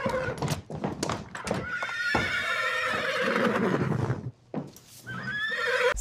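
AI-generated (Google Veo 3) horse sounds: hooves clopping on a wooden floor, then a long whinny lasting a couple of seconds that stops about four seconds in.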